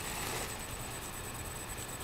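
Steady background hiss from a webcam's built-in microphone, with no distinct sound event.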